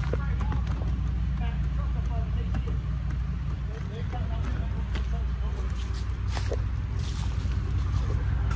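A vehicle engine idles with a steady low rumble. Faint voices talk in the background, and there are a few light clicks near the end.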